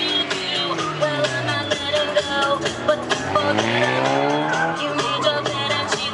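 Car engine driven hard through an autocross course, its pitch falling, then climbing for a couple of seconds and dropping again near the end as the driver gets on and off the throttle. Background music with a steady beat plays along.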